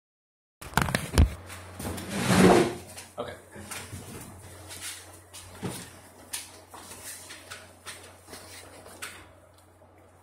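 Handling noise as a piano accordion is lifted and settled on its straps: scattered clicks and knocks, with a loud brushing rush about two seconds in. A faint steady low hum runs underneath. No notes are played.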